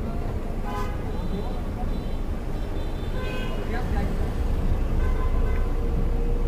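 Coach bus driving at speed, heard from inside the cab: a steady low engine drone and road rumble.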